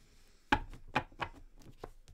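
A tarot deck being shuffled by hand over a wooden table: a series of sharp card slaps and taps, about five in the two seconds, the first and loudest about half a second in.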